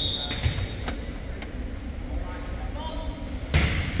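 A referee's whistle blows briefly at the start over the murmur of a gym, then a hand strikes a volleyball for a serve with a sudden thump shortly before the end.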